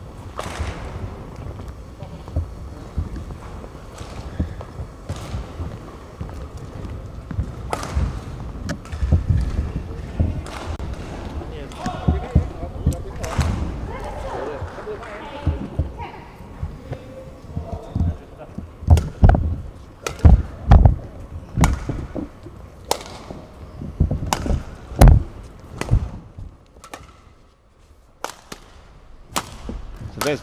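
Badminton rackets striking a shuttlecock in a knock-up rally, sharp hits coming about once a second and growing louder and more frequent partway through, the hardest hits near the end.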